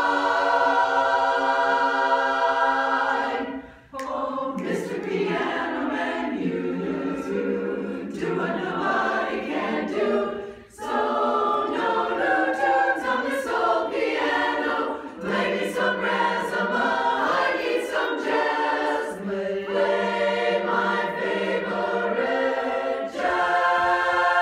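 Women's chorus singing a cappella in close harmony: a long held chord, then a bouncy, rhythmic passage of moving chords over a sung bass line, with short breaks about four and eleven seconds in, ending on another sustained chord.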